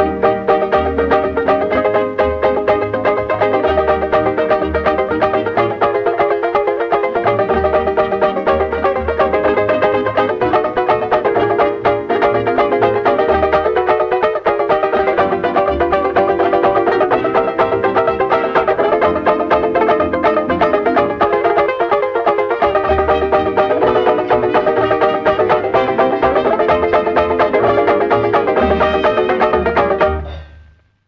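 Instrumental break of a 1930s British dance-band record: a banjo-ukulele playing busy plucked and strummed figures over the band, with a steady, bouncing bass beat and no singing.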